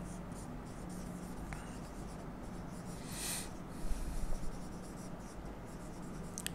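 Marker pen writing on a whiteboard: faint scratching strokes, the loudest about three seconds in, with a few light ticks of the tip after it.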